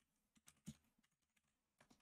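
Faint computer keyboard keystrokes: a handful of scattered key taps as a command is typed, the loudest a little under a second in and two more near the end.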